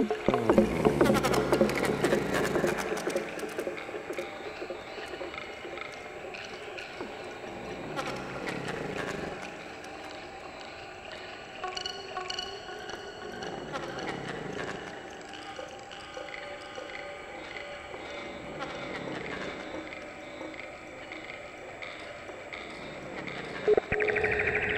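Eurorack modular synthesizer music driven by a houseplant's biodata through an Instruo Scion module. A loud, dense cluster of clicking notes opens, then it settles into quieter held tones that swell and sweep up and down in pitch every few seconds.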